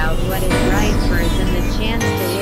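Dense experimental synthesizer noise: repeated falling sweeps from high to mid pitch over a steady low drone, with wavering tones in the middle.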